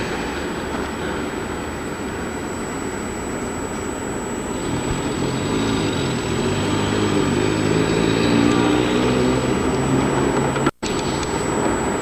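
A steady low engine hum over a noisy background, growing stronger about five seconds in, with a brief drop to silence near the end.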